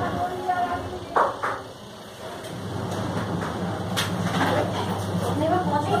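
People talking in the background, with a steady low hum underneath and a few short knocks, the sharpest a little after one second in.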